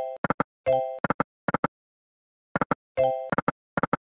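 Video slot game sound effects (EGT's 100 Burning Hot): runs of quick plopping clicks as the reels stop, and two short ringing chimes, about a second in and about three seconds in, as new spins start, with silence between.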